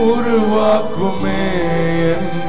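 Worship music: a voice singing a slow, chant-like devotional song over sustained instrumental accompaniment.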